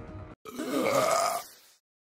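A long, loud burp voiced for a cartoon character, starting about half a second in and lasting about a second, its pitch bending downward before it fades out.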